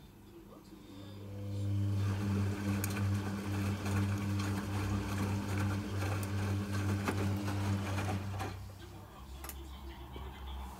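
Logik L712WM13 front-loading washing machine's motor turning the drum during a rinse tumble: a steady hum that starts about a second in and stops about eight seconds in, with wet laundry and water swishing in the drum.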